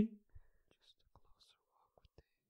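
The last held note of unaccompanied voices breaks off right at the start. Then near silence, with a few faint clicks and soft breathy noises.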